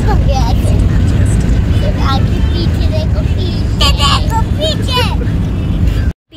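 Car driving, heard from inside the cabin: a loud, steady low road rumble, with a few faint voices over it.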